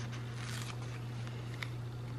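Sticker sheets being handled and a sticker peeled from its backing: a few faint rustles and short ripping scrapes, over a steady low hum.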